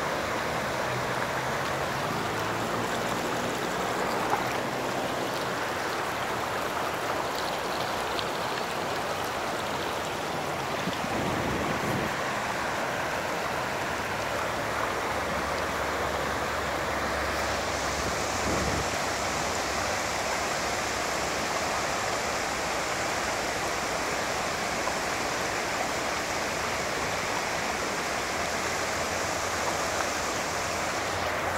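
Flash-flood water rushing through a desert wash, a steady churning of fast, muddy, turbulent current. The hissing top of the sound grows brighter a little past halfway.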